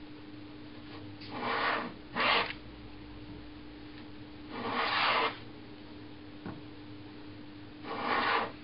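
Rider No. 62 low-angle jack plane taking shavings off a board of unknown wood: three short planing strokes, two close together about a second in and a single longer one about five seconds in.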